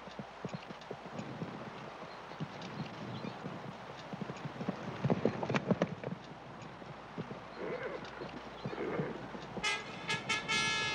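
Horse hooves clopping on dirt ground, with a heavier flurry of stamping around five to six seconds in as the horse rears. Two short calls follow near the end, and a held brass-like musical note comes in just before the end.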